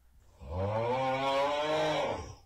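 A deep, rough, drawn-out voice answering, starting about half a second in and held for nearly two seconds.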